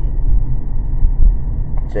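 Steady low rumble of a car being driven, heard from inside the cabin; a man's voice starts up near the end.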